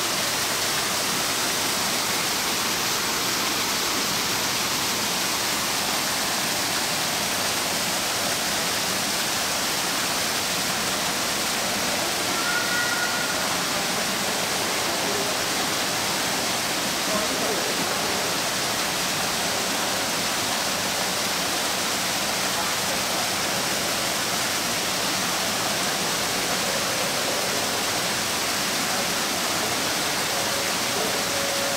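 An aquarium waterfall pouring steadily into the pool, making an even, continuous rush of water.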